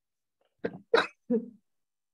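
A short burst from a person's voice: three quick sounds about a third of a second apart, the middle one the loudest.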